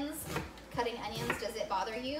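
Chef's knife chopping an onion on a wooden cutting board: a few knocks of the blade against the board. A voice carries on in the background.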